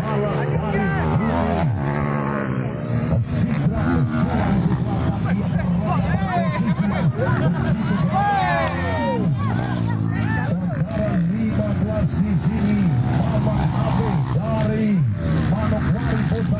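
Trail motorcycles racing on a dirt circuit, engines droning steadily with rising and falling revs as the bikes pass, under the chatter of nearby spectators.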